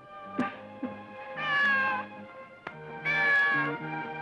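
A domestic cat meowing twice in long drawn-out calls, the first falling in pitch, over background music.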